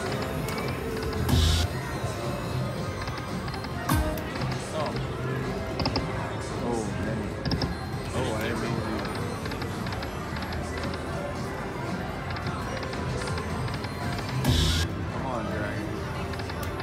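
Dragon Link video slot machine running through spins, with its reel sounds and game music, a few short louder bursts, and casino background chatter.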